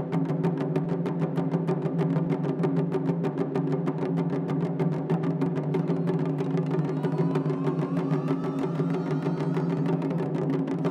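A taiko drum ensemble playing: large barrel-shaped chu-daiko and small rope-tensioned shime-daiko struck with bachi sticks in fast, even strokes, about six a second. A thin rising tone joins the drumming about seven seconds in.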